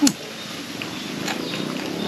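Close-up chewing of a mouthful of food, opening with a sharp mouth smack, over a low steady rumble.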